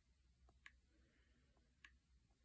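Faint clicks of typing on a tablet's on-screen keyboard, a few key taps in two small groups.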